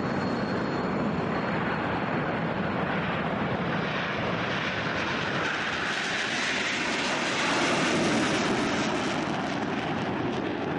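Jet engines of Northrop F-5E Tiger II fighters, each with twin J85 turbojets, running at takeoff power as the jets roll down the runway and lift off. A steady, loud jet noise that swells about seven to eight seconds in as a jet passes close.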